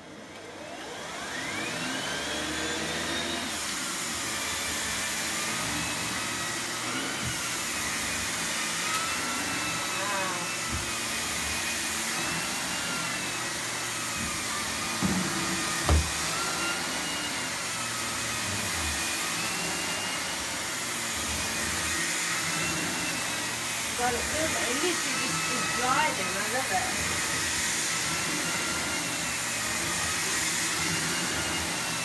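Miele C3 Complete canister vacuum cleaner switched on, its motor whine rising over about three seconds to full speed. It then runs steadily while the turbo brush is pushed back and forth over carpet, the pitch wavering gently. Two sharp knocks come about halfway through.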